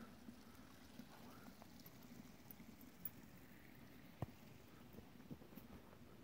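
Near silence: faint outdoor background with a few soft clicks, the sharpest about four seconds in.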